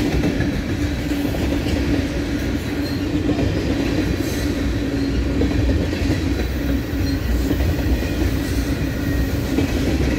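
Freight cars of a long mixed freight train, covered hoppers and tank cars, rolling steadily past. The steel wheels make an even rumble and clatter on the rails, with a steady low hum running through it.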